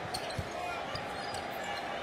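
Arena crowd noise during a basketball game, with a few thuds of a basketball dribbled on the hardwood court.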